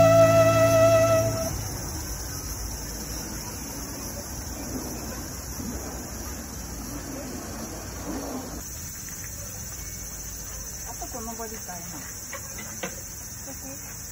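Flute music that stops about a second in, leaving steady faint outdoor background noise; faint voices come in near the end.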